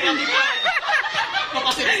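A small group of women laughing and chuckling, mixed with talk.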